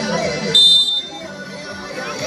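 A short, steady blast of a referee's whistle about half a second in, the signal for the kick to be taken, over voices that fade just before it.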